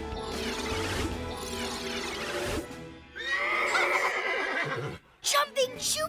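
Cartoon horse whinnying: one long, wavering neigh about three seconds in, after a stretch of music.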